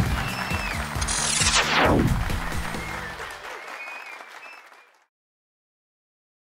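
TV show bumper music with a steady low beat and a falling whoosh sound effect about a second in, fading out to dead silence near the end.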